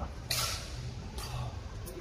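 Indoor badminton hall sound between rallies: a brief hissing swish about a third of a second in and a sharp click near the end, over a steady low hum.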